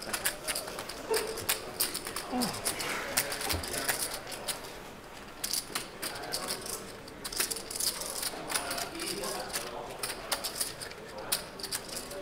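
Poker chips clicking and clacking as players handle them at the table, a steady scatter of small clicks, with faint murmured talk underneath.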